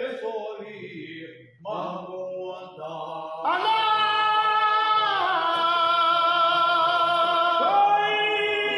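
Men's voices chanting a Sindhi molood (devotional praise song): a few broken phrases at first, then about three and a half seconds in the group comes in together on a long held note, moving to a new pitch twice.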